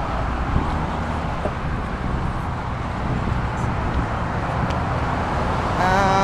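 Steady road traffic noise: cars driving past on a busy multi-lane road, an even rumble and tyre hiss without distinct events.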